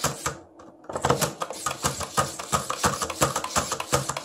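Hasbro Fantastic Gymnastics toy clicking rapidly as its yellow button is pressed over and over to swing the plastic gymnast around the bar. It is a quick run of sharp plastic clicks, several a second, starting about a second in after a short pause.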